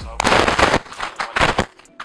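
A man talking loudly, close to a handheld microphone, with a short rough, noisy stretch about a quarter second in.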